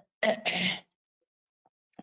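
A woman clearing her throat with a short cough, in two quick parts just after the start.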